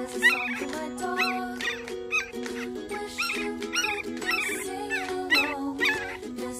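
A sleeping yellow Labrador puppy whimpering and crying in its sleep: short, high, bending squeaks that repeat every half second or so. Sustained chords of a pop song play underneath.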